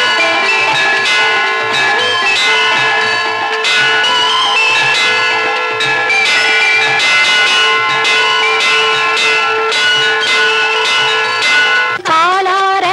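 Instrumental interlude of a Tamil film devotional song: bells struck over and over above sustained held tones, ringing on as temple-style bells do during worship.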